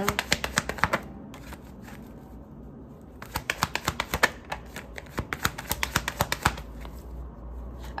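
A tarot deck being shuffled by hand, cards flicking against each other in quick runs of clicks: a short burst in the first second, then a longer run from about three seconds in to six and a half.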